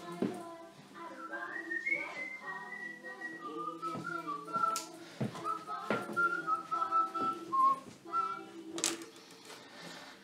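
A tune whistled in a wandering melody over steady background music, with a few sharp clicks of tools being handled on the bench.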